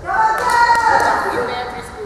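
Players' voices shouting, echoing in a large sports hall, the loudest call right at the start and sliding down in pitch, with a few sharp claps.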